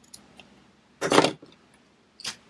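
A couple of light snips from scissors cutting zipper tape, then a short metallic clatter about a second in as the scissors and the metal zipper are handled and put down on the cutting mat.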